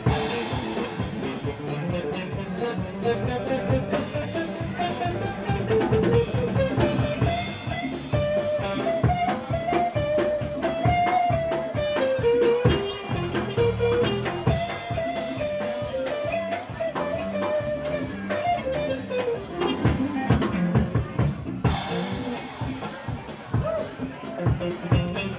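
Live blues-rock band playing an instrumental passage: drum kit and electric guitars, with a lead guitar line of held, bending notes through the middle of the passage.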